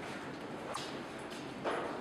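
An aye-aye feeding at a clear plastic feeder tube, with two short crackling sounds, one about a third of the way in and one near the end, over a steady background hiss.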